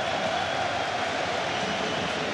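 Football stadium crowd noise: a steady wash of many voices at an even level.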